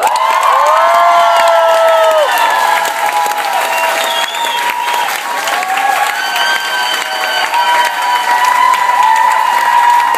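Concert audience applauding and cheering, breaking out at once and holding steady, with long high whoops rising and falling over the clapping.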